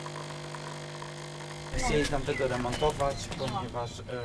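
An automatic coffee machine hums steadily while it dispenses coffee into a cup. The hum gives way to people talking about two seconds in.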